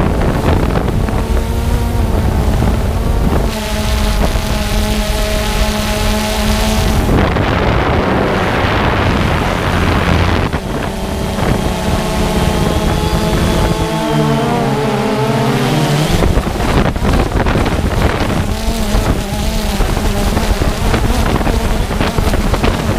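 DJI quadcopter drone's motors and propellers buzzing, picked up by the drone's own microphone along with wind noise. The motor tones change pitch as the drone manoeuvres, most markedly about two-thirds of the way through.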